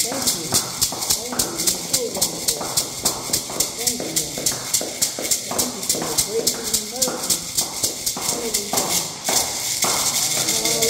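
Beaded gourd shaker (shekere) rattling in a steady rhythm of about four strokes a second, with hand claps and voices singing along.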